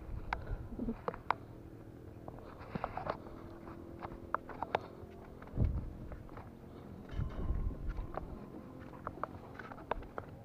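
Footsteps on a concrete walkway with scattered light clicks and taps, and a few low thumps around the middle.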